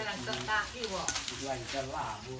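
Hand hacksaw cutting through an elephant's ivory tusk in repeated strokes, with voices talking over it.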